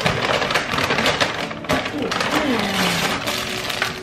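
Crinkling and rustling of a brown paper meal-kit bag and the plastic-wrapped packages inside as it is opened and unpacked by hand.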